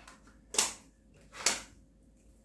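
Two brief clatters of metal binder clips being handled on a wooden table, about a second apart.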